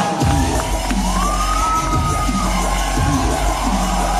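Dubstep electronic music with a regular heavy bass beat and a gliding synth line, with a crowd cheering over it.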